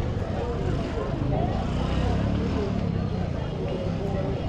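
Busy street ambience: a vehicle engine running close by, a little louder in the middle, under the chatter of passing people's voices.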